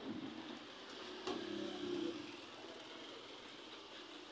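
Light road traffic going by, with a motorcycle engine passing. It grows louder between about one and two seconds in, then fades back to a steady low hum.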